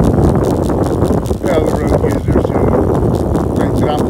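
Wind buffeting the microphone of a camera on a moving bicycle, with tyre and road noise and a stream of quick irregular clicks.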